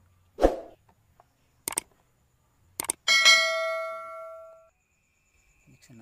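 A thump about half a second in, then two pairs of sharp clicks and a bright bell ding that rings out for over a second before fading: the mouse-click and bell sound effect of a subscribe-button overlay.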